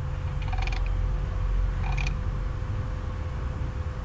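Steady low rumble and hum of open microphones on a video call, with a faint steady tone, and two short high chirps about a second and a half apart.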